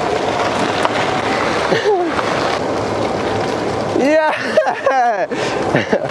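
Steady rushing noise of wind on the microphone and tyres rolling on a gravel path while cycling, with a person laughing about four seconds in.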